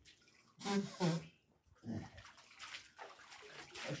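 Water splashing as a man scoops and washes with his hands in a stone-lined water channel. A short spoken exclamation, the loudest sound, comes about a second in.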